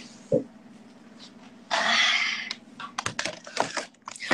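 Laptop keyboard keys clicking in a quick run near the end, after a single thump just after the start and a loud rustle about two seconds in, over a low steady hum.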